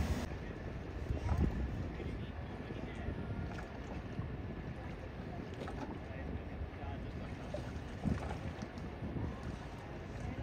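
Harbour ambience: a steady low rumble of motor yachts under way, with wind on the microphone, and two dull knocks, one about a second and a half in and one about eight seconds in.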